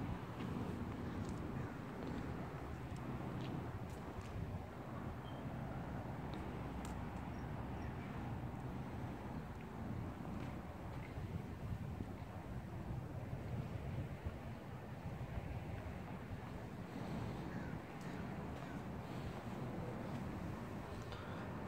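Steady low outdoor background rumble with some wind noise on the phone microphone, and a few faint clicks.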